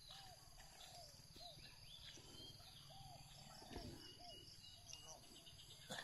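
Near silence: faint outdoor ambience with distant voices now and then, a steady faint high hiss, and a single soft low thump almost four seconds in.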